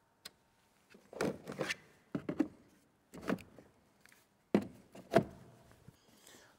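A series of sharp hard-plastic clicks and knocks as drone batteries are handled and slotted into their charging hub, the loudest two near the end.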